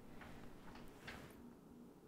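Faint room tone with three light clicks of small objects being handled on a tabletop.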